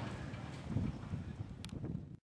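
Wind rumbling on the microphone over faint outdoor ambience, with a sharp click near the end.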